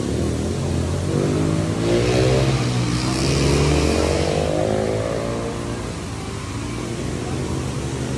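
A motorcycle engine running nearby, swelling and fading as it passes, loudest about two to four seconds in.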